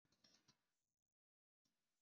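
Near silence: faint room tone with a few very faint ticks in the first half second, broken by stretches of complete digital silence.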